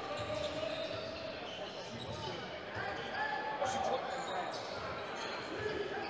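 Basketball being dribbled on a hardwood court in a sports hall, faint bounces over the hall's murmur of distant voices.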